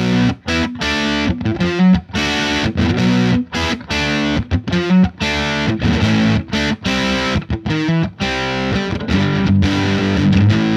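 Electric guitar on its bridge pickup played through a Fuzz Face fuzz pedal, with a Hilton volume pedal ahead of the fuzz in the chain so the pedal's setting governs how much the fuzz distorts. It plays short, choppy chord stabs with brief gaps, moving into longer ringing chords near the end.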